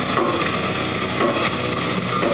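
Hardcore metal band playing live: a loud, dense wash of distorted guitars and drums, heard as a muddy, smeared mass.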